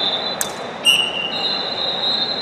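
Referee whistles blown in a wrestling hall over crowd noise: a sharp click about half a second in, a short, lower-pitched whistle blast about a second in, then a long, steady high whistle from just past the middle. The whistling goes with the restart of the bout's second period.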